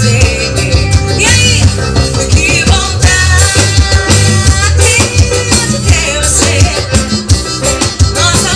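Live forró band playing: a woman singing into a microphone over accordion, electric bass and drum kit, with a steady dance beat and heavy bass.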